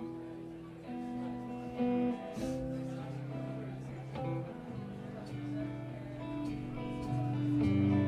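Guitar starting a slow song intro on stage, sustained notes and chords changing every second or so, growing gradually louder.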